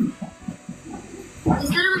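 A woman screaming and wailing, in a phone video being played back, her voice wavering and rising louder near the end.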